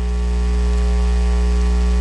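Steady electrical mains hum with hiss in the microphone feed: a loud low drone with a ladder of thin higher overtones, unchanging throughout.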